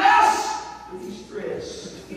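Speech only: a man's voice preaching in a large hall, loud at first and trailing off after about half a second.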